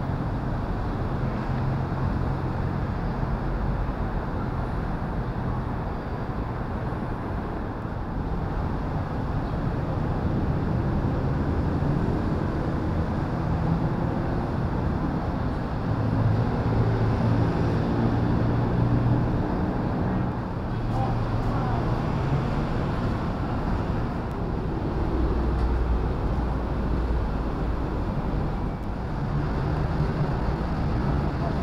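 Steady rumble of vehicle engines and road traffic, a little louder for a few seconds in the middle.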